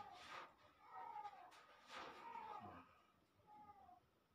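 A cat meowing faintly: three drawn-out meows, each rising and then falling in pitch, about a second apart. Soft breathy rustles come at the start and about two seconds in.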